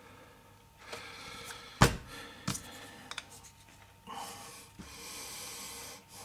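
Handling of a half-carved wooden tobacco pipe as a mouthpiece is fitted to it: a sharp knock about two seconds in, a couple of lighter clicks, then a steady breathy hiss for the last two seconds.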